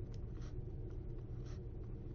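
Faint scratching and tapping of a stylus writing on a tablet: a few short strokes over a low steady hum.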